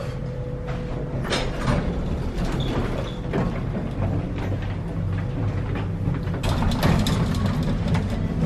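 Elevator cab running: a steady low mechanical hum with light clicks and rattles, which grow busier about seven seconds in. Rustling knocks come from a handheld camera being moved around.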